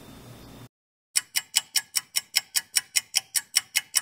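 Clock-ticking sound effect: fast, perfectly even ticks, about five a second, starting about a second in after a short drop to dead silence.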